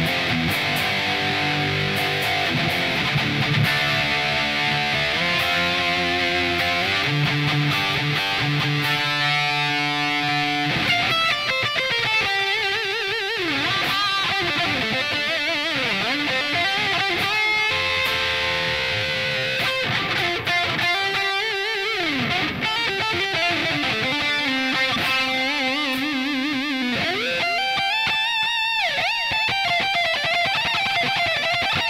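Destroyer-copy electric guitar played solo through an amp: held chords and ringing notes for about the first ten seconds, then fast lead runs with wide string bends and vibrato.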